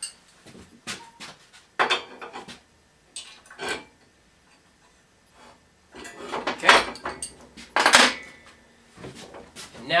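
Metal clinks, rattles and scrapes in several short bursts as a hand wrench tightens the steel support rods of a fold-out table-saw extension wing in their brackets. The loudest two bursts come about three quarters of the way in.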